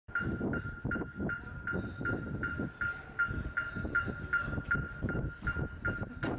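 Electronic metronome beeping at a steady tempo, about 2.7 clicks a second, the kind a drumline sets its warm-up to, with lower percussive taps and noise underneath.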